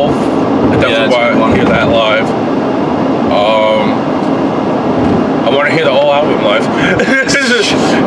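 Steady road and engine noise inside a moving car's cabin, with a man's voice coming in over it in several short wordless stretches.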